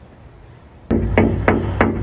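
Four quick knocks on a door, about a third of a second apart, each with a short ringing tone.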